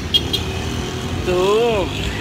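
Street traffic: a vehicle engine runs with a steady low rumble, and a voice calls out once in a long rise-and-fall tone in the second half.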